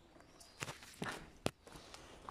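Footsteps on a rubble-strewn floor: three or four uneven steps, the sharpest about one and a half seconds in.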